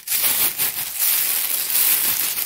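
Freshly ground Korean chili powder (gochugaru) pouring out of a plastic bag into a large stainless steel bowl: a steady, grainy hiss of flakes sliding and landing, with the bag crinkling.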